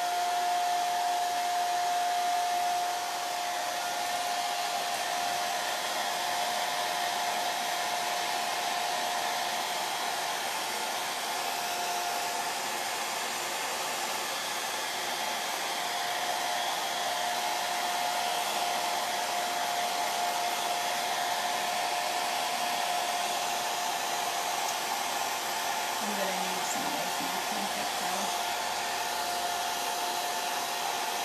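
Handheld blow dryer running steadily, a constant hiss with a steady whine, drying freshly brushed crackle medium so that the crackle forms. The level dips slightly about three seconds in.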